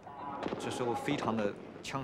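A man speaking, his voice rising and falling in short phrases, with a brief pause near the end.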